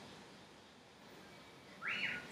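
Faint background hiss, then near the end a short whistling tone that rises in pitch and holds briefly before stopping.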